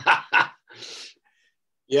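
A man laughing in three or four short bursts, then a breathy exhale about a second in.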